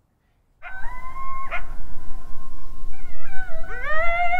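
A loud, high, drawn-out howling wail from a gagged man, muffled by the food in his mouth. It starts about half a second in, breaks off briefly, then wavers and rises steeply near the end.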